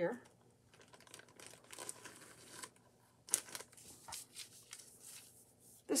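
Heavy upholstery fabric being pulled out and spread over paper pattern pieces: faint rustling and crinkling, with a sharper rustle about halfway through.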